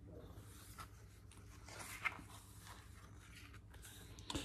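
Faint paper rustle of a picture book's page being turned by hand, with a small tap about two seconds in, over quiet room tone.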